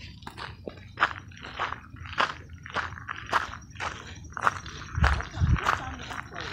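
Footsteps crunching on a gravel path, a steady walking pace of about two steps a second. A brief low rumble comes about five seconds in.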